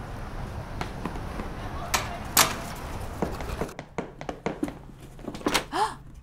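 Sparse knocks and clicks of footsteps and a door being opened, over a steady hiss that drops out about four seconds in. A short vocal sound comes near the end.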